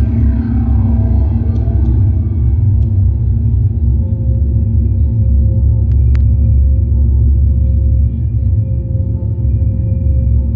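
Electronic ambient soundtrack of a projection-mapping show: a deep, steady rumbling drone with sustained tones. A falling glide runs through the first second or so, held tones enter about four seconds in, and a couple of sharp clicks come about six seconds in.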